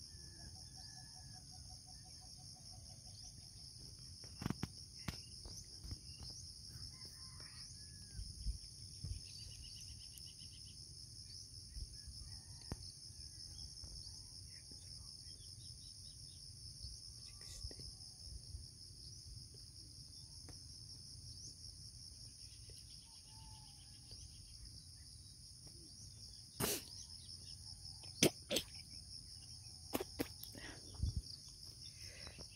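A steady, high-pitched chorus of insects, crickets among them, with scattered sharp clicks, the loudest a few seconds before the end.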